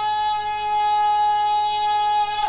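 Public-address microphone feedback: a steady, high-pitched ringing tone with a few overtones, held at one unwavering pitch.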